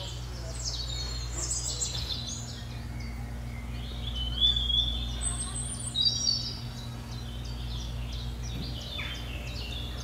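High, bird-like chirping and twittering comes and goes, loudest about halfway through. Under it runs a steady low hum.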